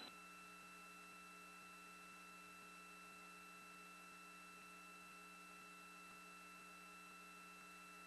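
Near silence: a faint, steady electrical hum made of several constant tones, with no other sound.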